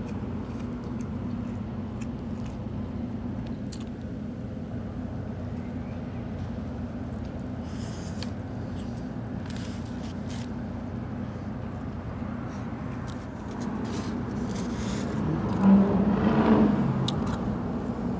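Steady low hum of road traffic from the street, swelling louder for a few seconds near the end as a vehicle passes, with a few faint clicks over it.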